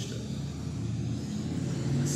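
A steady low rumble of road vehicle traffic.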